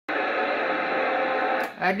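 Radio receiver audio from an amateur-satellite FM downlink: a steady, muffled, noisy signal with a few held tones, cutting off after about a second and a half. A man's voice starts just before the end.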